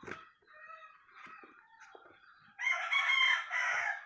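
A rooster crows once, starting about two and a half seconds in and lasting over a second. A few faint, softer sounds come before it.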